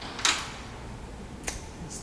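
Interior door into a garage being opened by hand: a short hiss-like swish, then a couple of light clicks.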